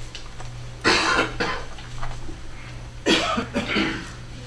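Someone coughing twice, once about a second in and again near the end, over a steady low electrical hum.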